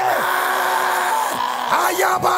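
A loud, impassioned voice holding one long shouted note in fervent prayer. It fades out about a second in, leaving a lower, weaker held tone.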